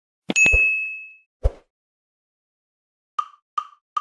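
Countdown sound effects: a bright ding struck with a thump, a second thump about a second later, then four short, evenly spaced clicks counting in the song.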